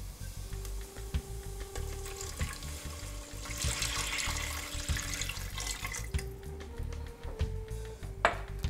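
Vegetable broth being poured into a stainless steel pot of sautéed onions and spices, a liquid pour that is loudest from about three and a half to five seconds in.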